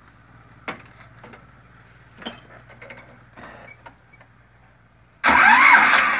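A few light knocks, then about five seconds in an Eicher 242 tractor's single-cylinder diesel engine starts and runs loudly.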